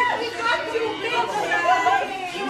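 Excited chatter of several women's voices talking over one another.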